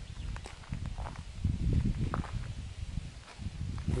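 Footsteps on a dirt and gravel driveway: a few irregular low steps with small scuffs and clicks, heaviest in the middle.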